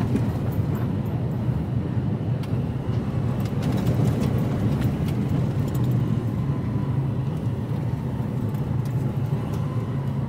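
Diesel engine of an HGV lorry running steadily as it drives slowly along a lane, heard from inside the cab as a low drone. Scattered light clicks sound over it.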